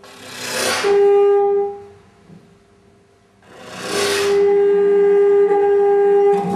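Trumpet playing two long held notes on the same pitch, each begun with a breathy rush of air through the horn that swells and then settles into the clear tone. The second note is held longer, with a quiet gap of about two seconds between the two.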